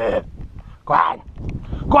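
A man shouting loudly in short, sharp yells, three in quick succession, as if to scare off an approaching black bear.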